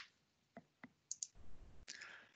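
Near silence broken by a few faint clicks, with a soft low rumble in the second half and a sharper click just before the end.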